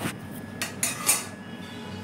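Spatula scraping and clinking against a serving plate as the curry is pushed onto it, with short scrapes about half a second and a second in.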